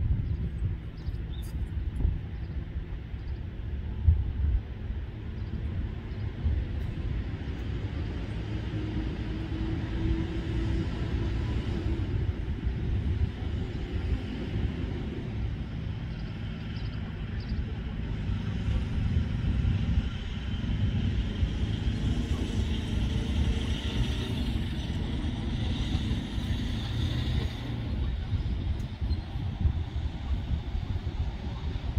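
Boeing 737-700 airliner on final approach, heard from a distance as a steady low rumble. A high turbofan whine grows louder in the last third as the jet comes closer.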